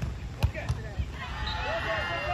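A beach volleyball being struck by a player's hand or arm: one sharp slap about half a second in, followed by a couple of fainter knocks, then players calling out as the rally goes on.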